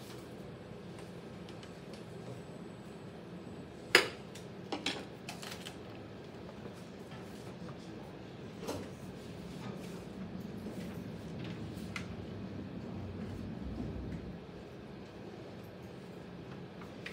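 Electric pottery wheel running with a low, steady hum. A sharp knock comes about four seconds in, followed by a few lighter taps and clicks.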